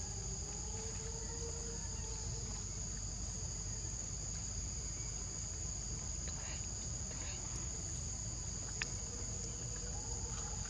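A steady, high-pitched insect chorus holding two even tones, with a single faint click near the end.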